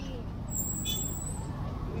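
Steady street traffic noise, with a brief high-pitched squeak about half a second in.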